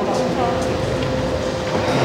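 Indoor showroom ambience: a steady hum and rumble of the hall with a faint murmur of visitors' voices.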